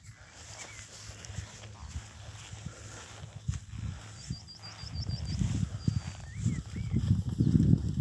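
Outdoor pasture ambience with birdsong: a rapid run of about seven short high chirps around four seconds in and a few short curling calls, over a low rumbling noise that grows louder towards the end.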